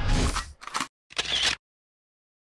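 Logo sting sound effect: a swell breaks into three short, sharp bursts, the last ending abruptly.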